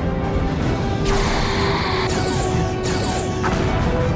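Dramatic film score with low sustained notes, under two crashing explosion sound effects of a starship taking hits. The first comes about a second in and lasts over a second; the second is shorter, near the three-second mark.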